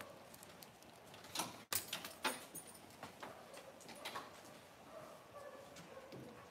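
Faint, irregular light taps and clicks of footsteps and dogs moving on a concrete floor, a few sharper ones between about one and a half and two and a half seconds in.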